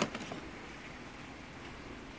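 Quiet, steady room noise with one short click at the very start.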